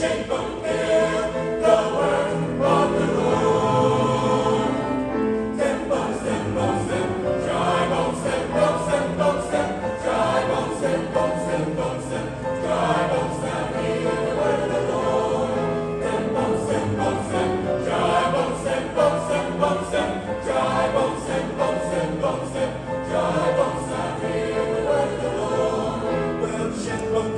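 Mixed-voice choir singing a gospel spiritual in full harmony, the voices moving together without a break.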